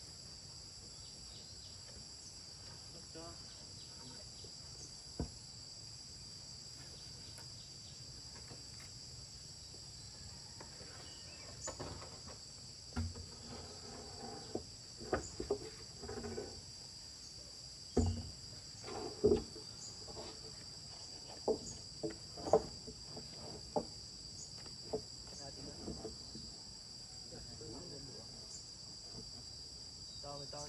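A steady, high-pitched chorus of insects ringing throughout. In the second half it is broken by a scattered run of knocks and clatters, the loudest about 18 to 22 seconds in, as corrugated cement roofing sheets are handled and lifted onto a timber roof frame.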